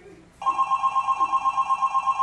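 Telephone ringing: one electronic trilling ring of two steady high tones warbling rapidly, about eight pulses a second. It starts about half a second in and lasts nearly two seconds.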